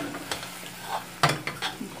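Spatula stirring pumpkin chunks and dried beef in a metal cooking pot, scraping the pot a few times, the loudest scrape about a second and a quarter in, over a light sizzle from the pot.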